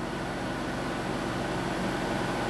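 Steady background hum and hiss of room tone, with no distinct events.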